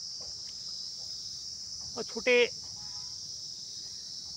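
Steady high-pitched insect chorus, a constant shrill chirring with no breaks.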